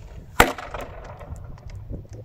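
A single sharp shot from an ASG Urban Sniper spring-powered bolt-action airsoft rifle, upgraded to about 3 joules, less than half a second in, with a short ringing tail.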